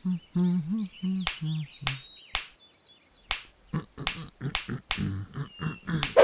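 Cartoon sound effects: a caveman's gibberish voice, then eight sharp ringing clinks of stone knocked on stone, spread over about four seconds from a second in, with short grunts between them.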